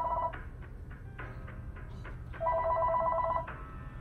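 A telephone ringing with a warbling two-tone electronic ring in a ring-pause cadence: one ring ends shortly after the start and the next, about a second long, comes in about two and a half seconds in.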